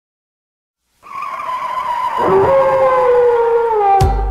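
A long, loud squealing, howl-like tone opening the mashup's intro, starting about a second in and sagging slowly in pitch, joined just past two seconds by a second, lower tone that slides up and then falls away.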